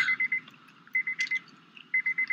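A car's electronic warning chime beeping with the driver's door open: a high tone pulsing in short runs of quick beeps, about one run a second.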